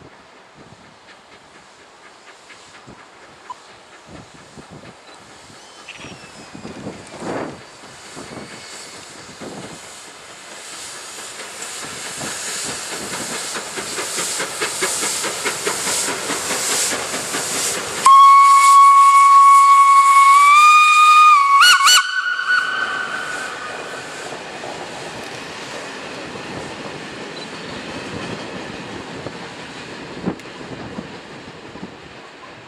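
SNCF 241P 4-8-2 Mountain steam locomotive working past, its exhaust and running noise growing steadily louder as it nears. It then sounds its steam whistle loudly in one blast of about four seconds whose pitch steps up twice near the end, and the noise of the passing train carries on, slowly fading.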